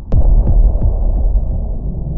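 Cinematic sound effects for an animated logo: a sharp hit just after the start, then a deep, low drone with a few soft low pulses that slowly fades.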